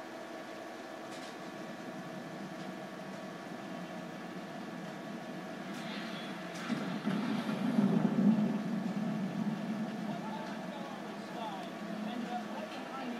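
Film trailer soundtrack played through computer speakers, over a steady hum. A low rumble swells about two-thirds of the way in, and voices come in faintly near the end.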